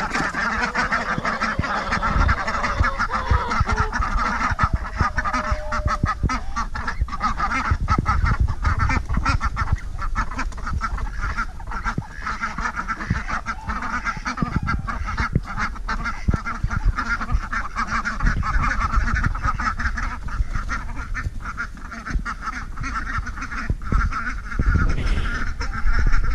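A flock of young domestic ducks calling continuously as they walk away, many short calls overlapping into a steady chatter.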